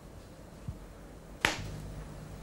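A single sharp click about one and a half seconds in, typical of a magnetic nerve stimulation coil firing a pulse, with a softer low tick before it and a faint low hum after it.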